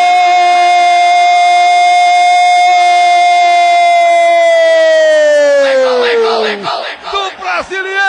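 A radio play-by-play announcer's long, held goal cry, 'gooool': one sustained high note that sags in pitch and breaks off about six and a half seconds in. Near the end a quick jumble of short swooping sounds leads into the station's goal jingle.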